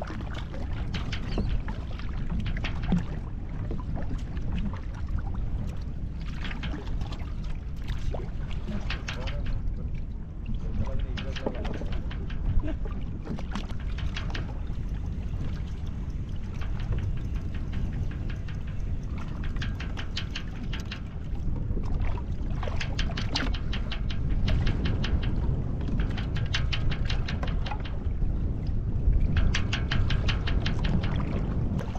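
Steady low rumble of wind and water on a boat at sea, with repeated bursts of rapid clicking and rattling.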